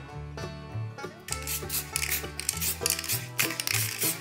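A small metal spatula scraping and rasping across the spray-painted face of a stone in short strokes, louder from about a second in, over background music with a steady bass line.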